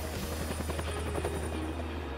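Several Bell UH-1 "Huey" helicopters flying low overhead: a steady mix of rotor and turbine engine noise.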